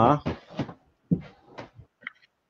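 Speech only: a trailing 'huh', then a few short murmured voice sounds with brief gaps between them.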